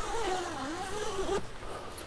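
Long zipper on a roof-mounted awning's cover being pulled open by hand, a buzz whose pitch wavers up and down with the pulling speed. It stops with a short click about a second and a half in.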